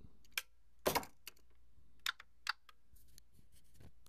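Irregular light clicks and taps from hands handling plastic devices, the loudest about a second in and a small cluster a little after two seconds.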